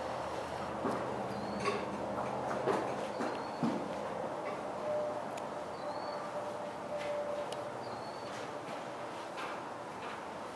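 A horse mouthing its bit while its bridle is adjusted, with scattered small clinks and knocks of the metal bit and tack and a few short high chirps.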